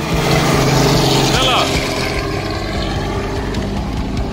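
Helicopter flying low overhead, its rotor and engine giving a loud steady drone. A brief voice calls out about a second and a half in.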